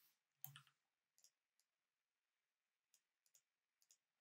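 Faint, sparse computer keyboard keystrokes: one clearer key press about half a second in, then a few light ticks.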